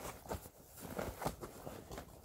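Rustling of a fabric backpack being handled, with a few light knocks and clicks as a hairbrush is put inside.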